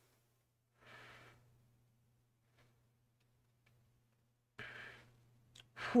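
A man breathing out heavily twice, a short breath about a second in and a longer sigh near the end, with silence in between, running into a spoken "whew" at the very end.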